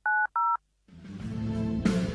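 Two short telephone keypad tones in quick succession, each a pair of pitches sounding together like a phone being dialled. After a brief silence, music fades in with steady held notes.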